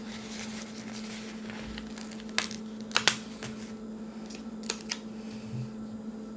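Paper sticker sheet being handled and stickers peeled off it: a few short crackles and clicks, the sharpest about three seconds in, over a steady low hum.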